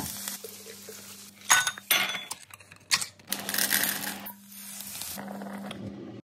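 Sausages sizzling in a non-stick frying pan, with several sharp clinks and knocks as they are turned, over a steady low hum.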